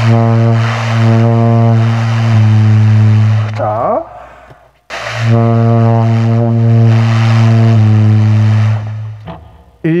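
Saxophone played in its low register: a long held low note that steps down to a lower note partway through, played twice with a short break between. It is a teacher's demonstration of getting the low notes to speak cleanly.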